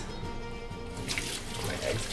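Kitchen tap turned on, water running into a stainless steel sink from about a second in, as egg is rinsed off the hands.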